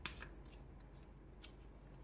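Faint handling of a tarot card deck: a few soft clicks of cards slipping against each other, one right at the start and another about a second and a half in.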